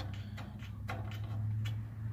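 Light ticks and clicks of a brass Schrader valve removal tool being screwed onto the service port of an air-conditioner king valve, over a steady low hum.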